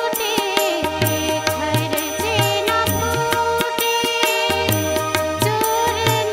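A woman singing a Bengali song with live accompaniment: her voice carries a wavering melody over a held drone note, with a stick-struck drum keeping a steady beat.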